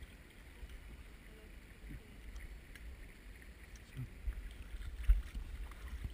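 Water sloshing around waders in a shallow stream, under a low rumble of wind and handling on a body-worn microphone, with a few soft knocks, the loudest about five seconds in.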